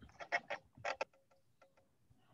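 A quick run of sharp, light clicks or taps, about five in the first second, then a few fainter ones spaced further apart.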